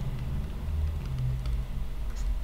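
A steady low hum with a few faint, scattered clicks and taps from handwriting being drawn on screen.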